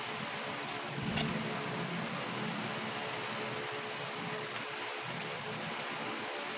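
Steady background hum and hiss, like a room fan, with a brief soft sound about a second in.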